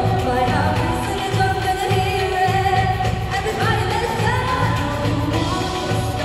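Two women singing a song live into handheld microphones over a backing track with a steady beat of about two bass pulses a second, played through stage speakers.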